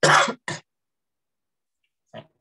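A man clearing his throat twice in quick succession: a longer loud rasp, then a short one.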